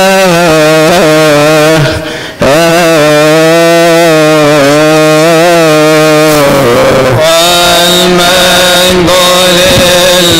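A male voice chanting a melismatic Coptic liturgical chant, holding long wavering notes, with a short breath break about two seconds in. About seven seconds in, a high steady ringing and a few sharp metallic strikes join the chant.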